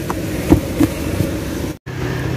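A few light knocks and taps from a hand handling the plastic door-sill trim around a car's rear door striker, the loudest about half a second in, over a steady background hum. The sound cuts out for an instant near the end.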